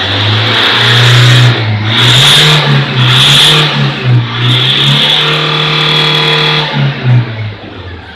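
Toyota Fortuner's diesel engine being revved while parked. The revs climb over the first second and go up and down a few times. They then hold high for a couple of seconds and fall back to idle near the end.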